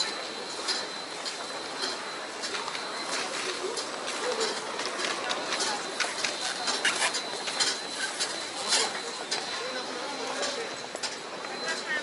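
Background sound of a busy airport terminal hall: distant voices under scattered clicks and taps, with a faint steady high whine.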